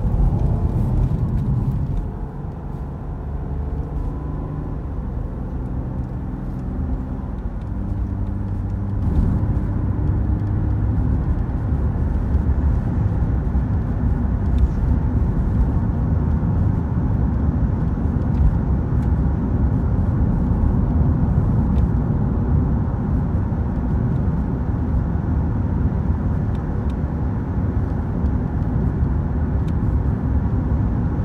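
Car driving on a highway, heard from inside the cabin: a steady low rumble of engine and tyres on the road. Over the first several seconds an engine note climbs in pitch in steps as the car gathers speed, then the rumble holds steady.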